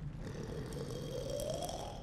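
A cartoon cyclops monster snoring: a low rumbling snore whose pitch slowly rises.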